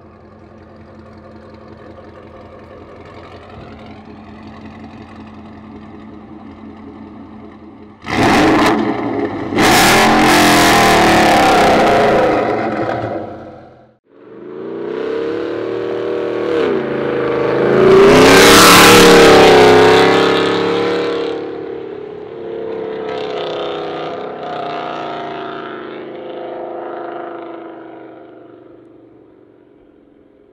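First-generation Ford Raptor's 6.2-litre V8 through a Corsa Extreme exhaust: idling low for about eight seconds, then suddenly loud as it is revved hard. After a brief cut-out the truck accelerates past, loudest near the middle with its pitch rising and then falling, and fades as it drives away; the exhaust is loud and a little raspy.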